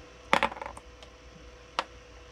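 A 3D-printed plastic hex nut dropped onto the printer bed: a sharp clack about a third of a second in, with a short rattle as it settles. A single click follows near the end.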